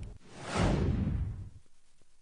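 Whoosh sound effect from a TV news graphic transition: a rush of noise with a low rumble that sweeps down in pitch and fades out about a second and a half in.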